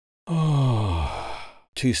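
A man's long voiced sigh, an audible "ahh" that slides down in pitch and lasts over a second, followed near the end by a short spoken word.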